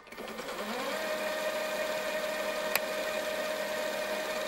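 A steady whirring drone used as a sound effect under a chapter title card. It swells in over the first second into a held tone, with one sharp click about two-thirds of the way through.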